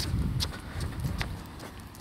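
Footsteps of a person walking: a few sharp ticks over a low rumble on the phone's microphone.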